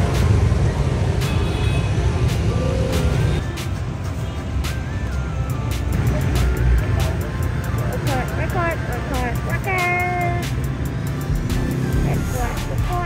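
Street traffic with motorbike engines running in a steady low rumble, mixed with background music.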